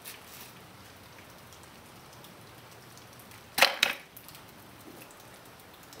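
Homemade wooden catapult firing: its bungee-cord-driven throwing arm snaps up and clacks against the wooden crossbar, one sharp knock about three and a half seconds in with a smaller knock just after.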